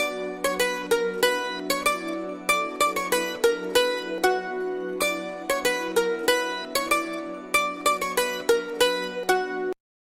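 Instrumental music: a quick melody of plucked-string notes over a steady low drone, cutting off abruptly near the end.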